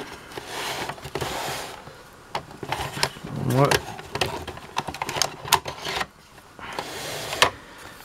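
Hard plastic parts of a toy playset being handled: a scattered series of sharp clicks and knocks, with stretches of plastic rubbing and scraping.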